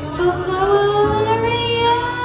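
A boy singing one long note into a microphone, sliding upward and holding, over a karaoke backing track.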